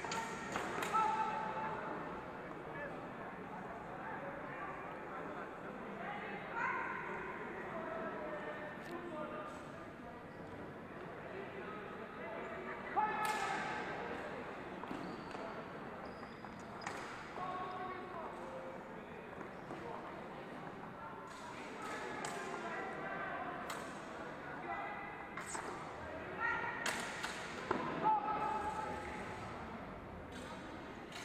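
Echoing sports-hall din of overlapping voices and shouts, broken by sharp cracks and knocks from sword fencing bouts, loudest about halfway through and in a cluster near the end.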